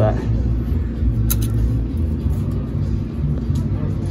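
Background music with a low bass line that shifts from note to note, under a steady low rumble, with one short click about a second in.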